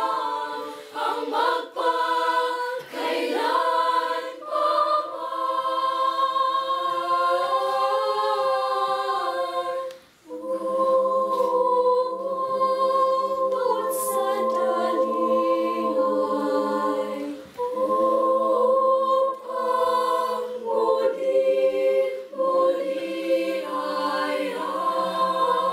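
Children's choir singing unaccompanied in several parts, holding long notes. The singing breaks off briefly about ten seconds in, then resumes with a lower part added.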